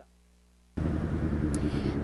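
Near silence for under a second, then from about three-quarters of a second in, a steady rumble of street traffic, with cars and a motorcycle going by.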